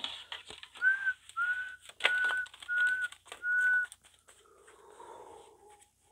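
Five short whistled notes at nearly one pitch, each about a third of a second long and evenly spaced. Light clicks of a deck of cards being handled come in between the notes.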